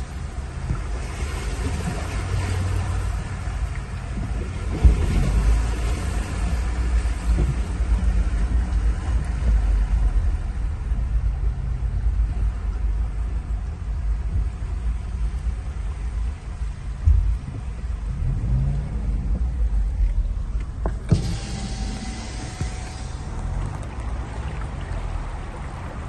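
Low, steady rumble inside a car's cabin as it moves slowly along a flooded road, with a few dull thumps. About three seconds before the end the rumble gives way to a brighter, even hiss.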